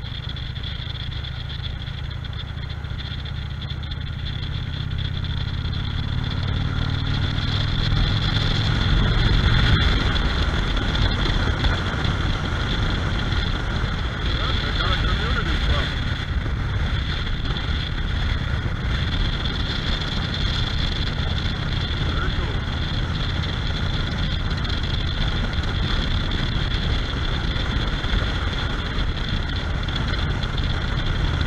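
Motorcycle running along a road, engine and road noise getting louder over about the first ten seconds as the bike picks up speed, then holding steady at cruise.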